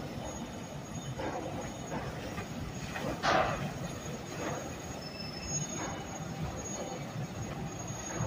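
Large motor yacht passing close by: a steady low engine rumble under repeated rushing surges of water from its hull wash, the loudest about three seconds in.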